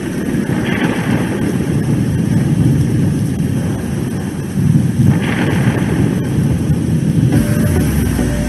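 Steady, loud rumbling rain-and-thunder storm effect with two brief brighter swells; a single held tone enters near the end.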